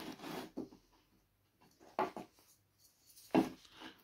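Softwood battens handled on a plywood board: a faint rubbing of wood on wood, then a soft knock about two seconds in and a louder knock near the end as one piece of timber is set down against the other.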